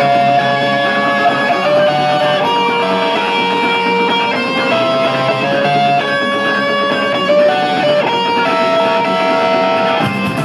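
A live rock band's electric guitars and bass guitar playing loudly through amplifiers. The guitars play a melody of held, changing notes over a bass line.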